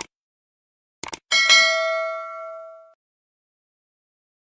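Subscribe-button animation sound effects: a click at the start and a quick double click about a second in, then a single bell ding that rings out and fades over about a second and a half.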